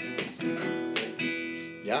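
Acoustic guitar strummed on an E minor chord: a few strums near the start and one about a second in, left to ring and fade.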